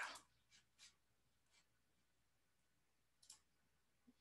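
Near silence: room tone, with a few faint short clicks.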